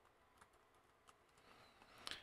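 Near silence, with a few faint computer-keyboard clicks as a filename is typed.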